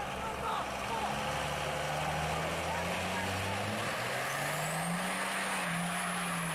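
Diesel engine of a second-generation Dodge Ram pickup (a Cummins inline-six) held at high revs under load, its pitch creeping up slowly over a constant hiss of spinning rear tyres: a burnout while the truck pours black smoke.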